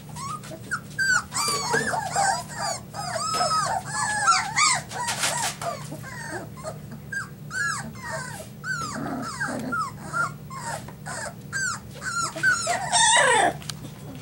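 Three-week-old border collie puppies whining and squealing: a near-continuous string of short, high calls that rise and fall, with a louder, longer cry near the end.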